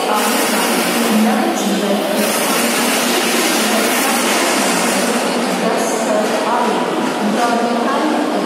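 Public-address announcement at a railway station: a voice over loudspeakers, echoing under the platform roof, over a steady din of station noise.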